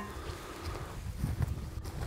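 Low, gusty wind rumble on the microphone with a few faint knocks and footsteps as a steel plate is handled against a steel I-beam target.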